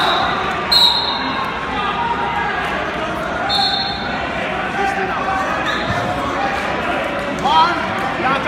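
Crowd chatter echoing in a large gym hall, with several short high squeaks from wrestling shoes on the mat and occasional thuds as two wrestlers grapple.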